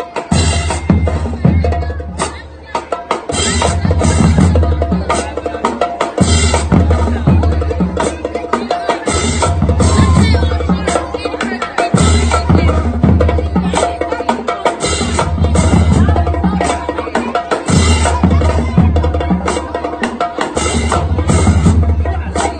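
High school marching band playing a drum-heavy stand tune, with snare and bass drum hits throughout and a deep bass line that returns in repeated phrases every couple of seconds.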